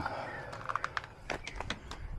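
A few faint, irregular clicks and taps over a low background hush.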